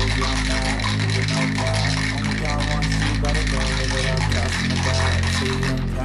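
Ice cubes rattling inside a stainless steel cocktail shaker as it is shaken, under a rap song with a heavy bass line that is louder throughout.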